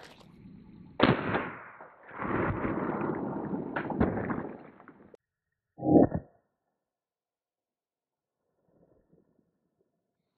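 Suppressed short-barrelled AR-15 firing subsonic 300 Blackout at a soft armor panel. A sharp report comes about a second in, followed by a few seconds of rushing noise, and a second sharp shot-like report about six seconds in.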